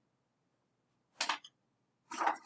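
A single short, sharp click about a second in, against otherwise near-silent room tone.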